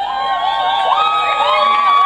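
Concert audience cheering, with many voices overlapping in long, high whoops and held calls.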